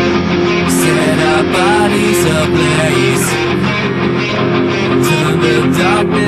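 Guitars playing an instrumental passage of a metal song with the drum part removed, a dense, steady wall of sustained chords. Notes bend in pitch about a second and a half in.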